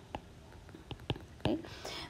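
A woman's soft, near-whispered "right? okay?" and several light, separate clicks of a stylus tapping on a tablet screen as handwriting is written.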